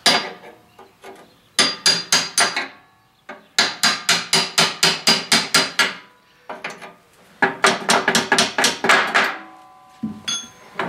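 Hammer striking a steel punch held against the hinge pin of a cast iron wood stove door, driving the pin up and out. The strikes come as a single blow and then three runs of quick, ringing metallic taps, about four to six a second.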